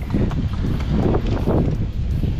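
Wind buffeting the microphone, a steady low noise, with a horse's hooves stepping on sandy ground as it walks up to a metal gate.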